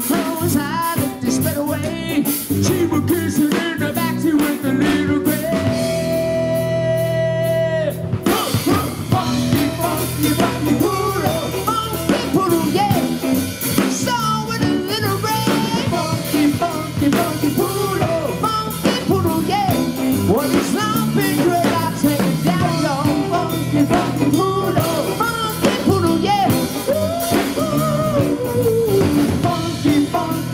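Live rock band playing an instrumental stretch: electric guitar lead with bending notes over electric bass and drum kit, with one long held note about six seconds in.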